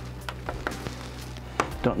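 A few light, separate clicks and taps of small plastic connector parts and tools being handled on a work mat.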